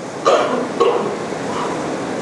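A man clearing his throat and breathing close to a microphone: a few short, rough throat sounds between sentences.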